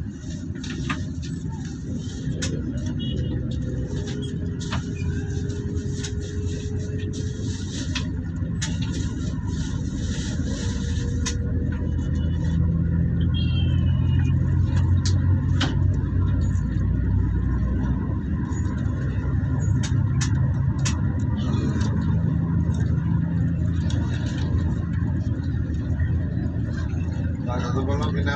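Moving road vehicle heard from on board: a steady engine and tyre rumble, growing louder about halfway through, with scattered small clicks and rattles.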